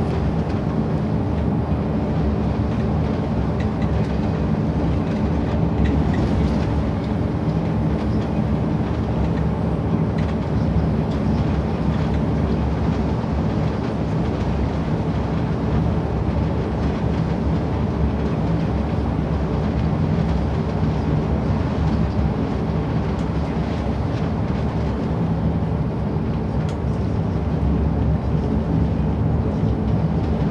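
Steady drone of a bus on the move, heard from inside the passenger cabin: engine hum and road noise, with no breaks.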